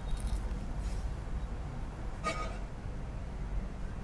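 A bite into a crusty bánh mì baguette, with faint crunching near the start, then chewing, over a steady low background rumble. A brief pitched sound comes about halfway through.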